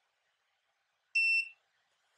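A single short electronic beep, about a third of a second long, about a second in: the DOBOT Magician robot arm's buzzer signalling that it has connected to the computer.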